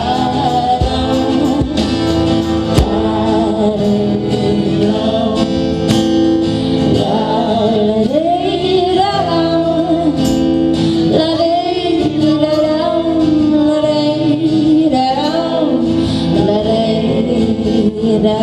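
Acoustic band playing live: several strummed acoustic guitars under a female lead vocal, with male harmony voices.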